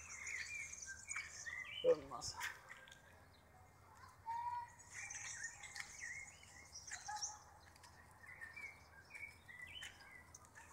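Several small birds chirping and twittering in the trees, short repeated calls throughout, with a brief human vocal sound about two seconds in.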